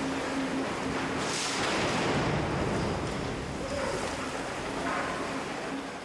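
Tunnel construction machinery running in a bored rail tunnel: a steady rushing noise with a faint low hum. It grows louder a little over a second in and eases after about three seconds.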